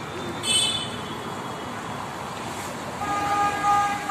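Street traffic with a vehicle horn: a brief, high-pitched beep about half a second in, then a steady horn tone lasting about a second near the end.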